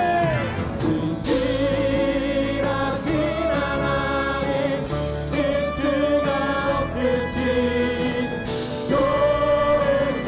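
Church worship team singing a slow praise song together in Korean over acoustic guitar and band accompaniment, with long held notes.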